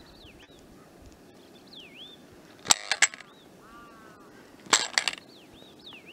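Birds calling outdoors: repeated whistled notes that swoop down and back up, with two louder, harsh bursts of a few quick strokes each about three and five seconds in.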